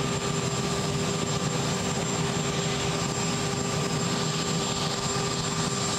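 Steady drone of idling aircraft turbine engines, with a constant high whine over a rushing noise that neither rises nor falls.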